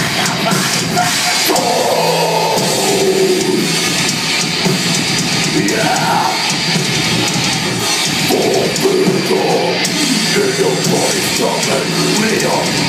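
Heavy metal band playing live: distorted electric guitars and drum kit, loud and dense without a break, as heard from the crowd in a hall.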